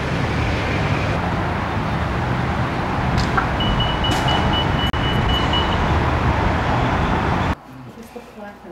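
Outdoor traffic noise with wind rumbling on the microphone, a steady noise that cuts off suddenly near the end. A thin, high, pulsing tone runs for about two seconds in the middle.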